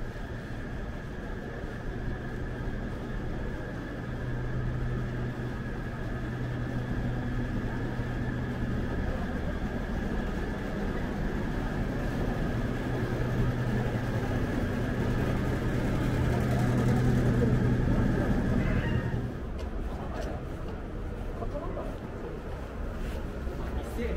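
Steady low hum of building machinery with a faint high whine, growing louder toward the middle and falling away sharply near the end.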